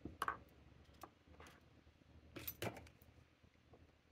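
Faint, scattered clicks and taps of small objects being handled on a desk, with the loudest pair about two and a half seconds in.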